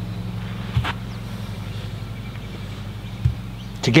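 A steady low mechanical hum, like a motor running in the background, with two soft low thumps, one about a second in and one near the end.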